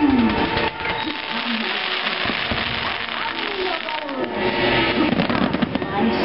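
Aerial fireworks launching and bursting: a run of sharp pops and crackles, densest about a second in and again near the end.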